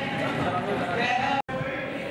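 Several people's voices talking and calling out over one another, including one drawn-out voice. The sound drops out completely for an instant about three quarters of the way through.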